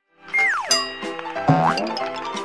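Short cartoonish transition jingle: music with a steep falling pitch glide near the start and a quick rising glide about a second and a half in.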